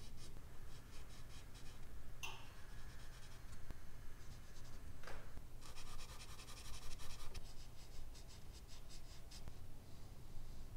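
Charcoal pencil and eraser strokes rubbing on medium-surface drawing paper, in runs of quick back-and-forth scratching that are busiest in the second half. There are two short squeaks from the tool on the paper, about two and five seconds in.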